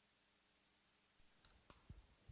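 Near silence with faint room tone, then a few faint clicks and soft low thumps in the last second: footsteps and body movement of a man stepping up to a pulpit, picked up close by his lapel microphone.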